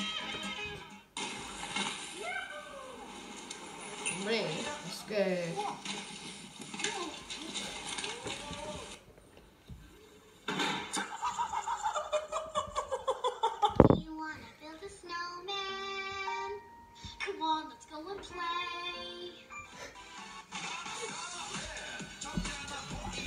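A compilation of short video clips playing: voices and music that switch abruptly from clip to clip every few seconds, with a brief quiet gap about nine seconds in and a stretch of held musical tones after the middle.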